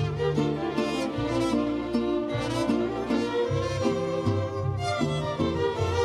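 Mariachi violins with a string orchestra playing the instrumental introduction to a song, the violins carrying the melody over a bass line that changes note about once a second.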